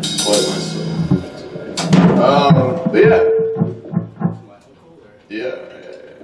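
Electric guitar and bass noodling between songs: a held note that fades about a second in, then scattered single notes, including a run of short low notes near the middle. Indistinct talk in the room alongside.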